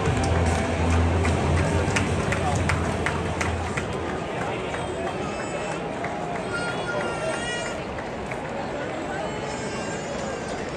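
Ballpark crowd noise with many voices, under loud stadium PA music that stops about four seconds in. Scattered claps come early on, and a single high, drawn-out shout rises over the crowd past the middle.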